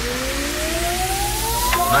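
Electronic riser in a dance remix: a single synth tone gliding steadily upward over a rising hiss and held low bass notes, building up to the drop.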